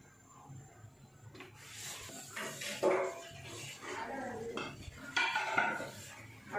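Kitchen clatter of a clay cooking pot and utensils being handled, irregular rustling and scraping with a sharp knock about three seconds in and another just after five seconds.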